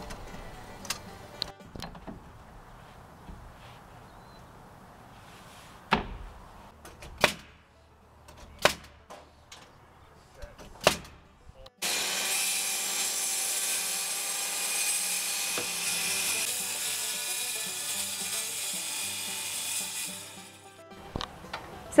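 A handful of sharp, irregular knocks from work at the roof peak. Then a boom lift's engine and hydraulics run steadily for about eight seconds as the basket is raised, fading out near the end.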